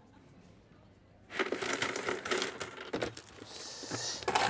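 Quiet room tone, then about a second in a handful of coins drops onto a wooden tabletop and clatters and jingles for a second or two, settling into softer shuffling near the end.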